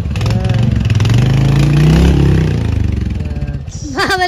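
Motorcycle engine revving as the bike pulls away. Its pitch rises for about a second and a half, then the sound fades as it rides off.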